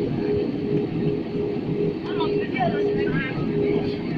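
Steady rumble and rush of a jet airliner's cabin in cruise, with faint voices of people talking over it.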